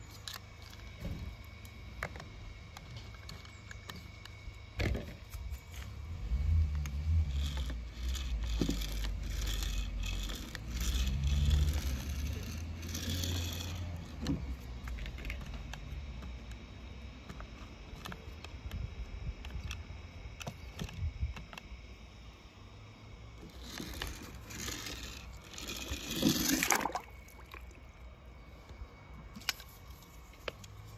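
Small toy monster truck being handled and rolled across paper and a plastic tabletop: scattered clicks and scrapes of the wheels. A low rumble runs for several seconds from about six seconds in, and a louder scrape comes near the end.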